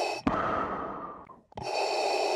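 Darth Vader's respirator breathing sound effect, looping: a long exhale starts with a click about a quarter second in and fades, and the next hissing intake begins about a second and a half in.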